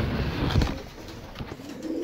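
Domestic pigeons cooing in the background, with a low rumble during the first second.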